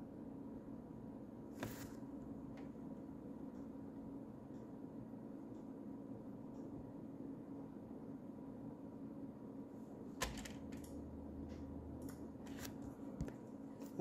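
Quiet steady hum with a few faint clicks: one about two seconds in, a louder click with a soft thump about ten seconds in, and several small ticks near the end.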